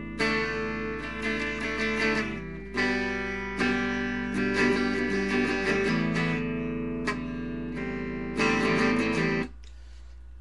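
Guitar played through an amplifier, strummed chords ringing one after another, over a steady low amp hum. The playing cuts off suddenly near the end, leaving only the hum; the player blames his amp going crazy.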